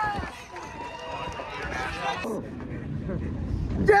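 Excited whooping and cheering voices inside a vehicle cab with the window open, over a steady low rumble. A loud shout comes near the end.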